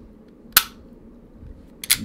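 SIG P365 striker-fired pistol dry-fired: one sharp click about half a second in as the trigger breaks and the striker falls. Near the end come two quick metallic clacks as the slide is racked back to reset the striker.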